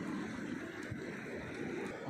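Steady low rushing of wind and shallow seawater at the shore, with a faint tick or two.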